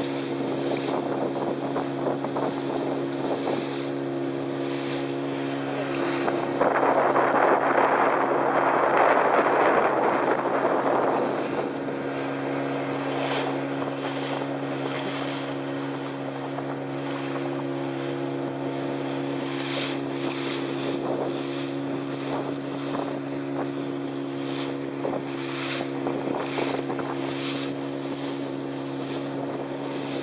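The motor of a small open boat running steadily at cruising speed, with a constant drone. The hull rushes through choppy sea and wind hits the microphone. A louder rushing noise lasts about four seconds, starting around seven seconds in.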